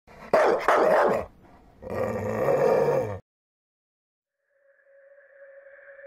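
An animal calling twice, a short call and then a longer, drawn-out one about a second and a half long. After a silent gap, a steady sustained note fades in near the end as the music begins.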